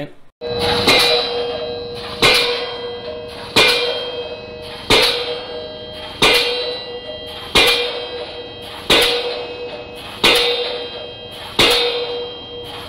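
Open-ended diesel pile hammer striking a steel H-pile at a steady rate of about one blow every 1.3 seconds, nine blows in all. Each blow is a sharp metallic clang followed by a ringing tone that fades up to the next blow. That blow rate works out to a ram stroke of about 7 feet, early in the drive.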